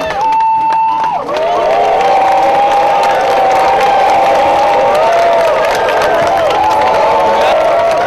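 Excited crowd cheering and screaming. A single long, high shout comes first, then from about a second in many voices scream and cheer together.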